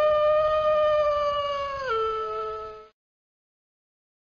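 A wolf howling: one long call that holds a steady pitch, drops a step about two seconds in, and fades out about a second later.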